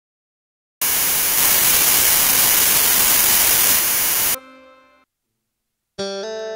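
A burst of loud, steady static-like hiss that starts just under a second in and cuts off suddenly about three and a half seconds later. A faint, brief tone follows it and fades out, with silence on either side.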